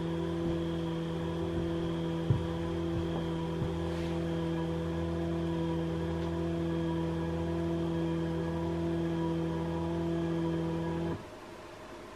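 Stepper motor driving a ball screw at a slow 500 mm/min feed, giving a steady whine of several held tones. The motor stops suddenly about eleven seconds in as the axis reaches zero.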